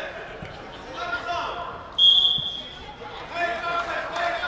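A referee's whistle: one short, shrill blast about halfway through, stopping play as a player goes down, with players' and spectators' voices around it.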